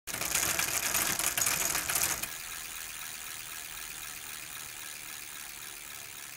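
Logo-intro sound effect: a dense, rapid mechanical clicking for about two seconds, then a quieter hissing tail that cuts off abruptly just after the logo appears.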